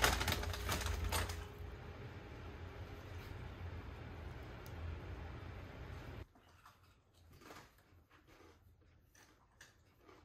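A few light clicks and taps as chopped green onions are shaken off a ceramic plate into a slow cooker crock, over a steady low hum. The hum stops abruptly about six seconds in, leaving quiet room tone with a few faint clicks.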